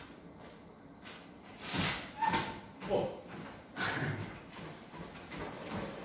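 Treadmill being started and stepped onto: a few irregular knocks and footfalls on the deck, then a short electronic beep from the console about five seconds in.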